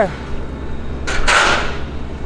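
A short, sharp hiss about a second in, lasting about half a second, over a steady low engine rumble.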